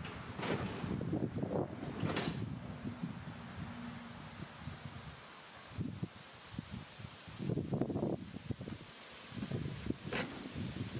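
Wind buffeting an outdoor microphone, an uneven low rumble, with scattered rustles and soft knocks that pick up in the first two seconds and again near the end.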